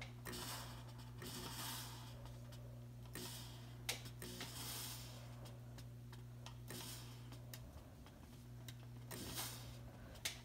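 Faint steady low hum with a light hiss, and a few soft clicks.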